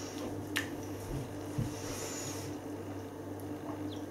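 Quiet room tone with a steady low electrical hum, broken by a few faint, short clicks.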